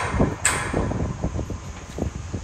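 Excavator working at a construction site: a low, uneven engine rumble, with two sharp clanks in the first half-second.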